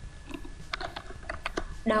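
Keystrokes on a computer keyboard: a quick, irregular run of clicks.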